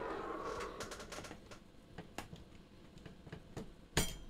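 Light, scattered clicks and taps from hands handling an Apple ImageWriter dot matrix printer's print head and carriage as the head is taken out, with a sharper click at the end.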